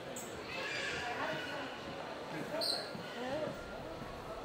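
Indistinct voices of people talking in a hallway, with footsteps on a hardwood floor.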